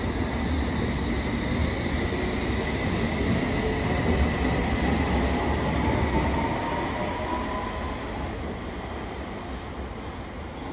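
London Underground S7 stock train accelerating out of the platform: wheels rumbling on the rails under a slowly rising electric whine. The sound fades steadily through the second half as the train pulls away.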